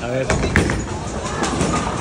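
A bowling ball released onto the lane, with a sharp knock about half a second in and then a low rolling rumble, over voices and chatter.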